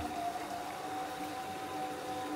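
A steady machine hum made of several fixed tones, over a faint even wash of water.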